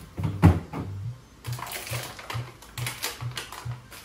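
Background music with a steady low bass pulse about three times a second, with light rustling. There is a single sharp knock about half a second in, the loudest sound.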